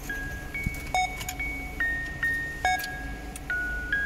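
Background music: a light melody of bell-like struck notes, one after another, each ringing on briefly.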